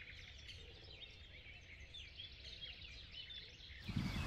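Faint birdsong: many short chirps and calls from several small birds, over a faint low rumble.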